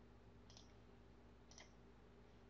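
Near silence with two faint computer mouse clicks, about half a second in and a second later.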